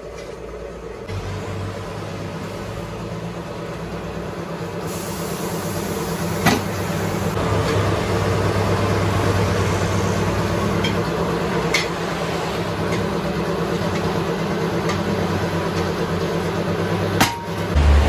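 Tyre-shop machinery running with a steady motor hum while a tyre is worked onto a wheel on a tyre changer. The hum grows slowly louder, and a few sharp metal clicks come through it.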